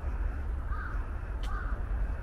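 A crow cawing, two short calls less than a second apart, over a steady low street rumble.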